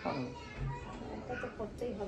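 Faint voices talking in short snatches, a child's voice among them.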